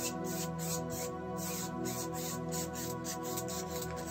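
Soft background music with sustained held tones, under faint scratchy rubbing of a wide paintbrush stroking wet paint across a canvas.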